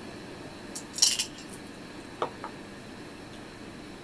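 Small plastic dice and a clear plastic case being handled: a short, bright clattering rattle about a second in, then two light knocks on a wooden tabletop a little after two seconds.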